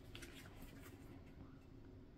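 Near silence: faint rustling and light clicks of oracle cards being picked up and handled in the first second, over a low steady room hum.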